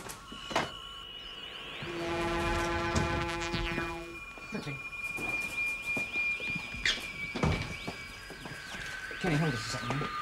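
Electronic science-fiction spaceship sound effects: held synthesized tones that change pitch every few seconds, with a fuller chord about two to four seconds in and small gliding bleeps above. There is a sharp knock near the start and another about seven and a half seconds in.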